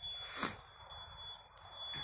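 A short breath or sniff about half a second in, over a faint, steady high-pitched whine, with a small click near the end.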